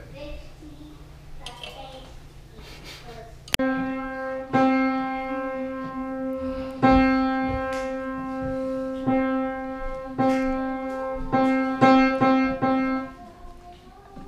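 Piano played by a child practising: single notes struck one after another, mostly on the same pitch, about a dozen in all, starting about three and a half seconds in and stopping shortly before the end.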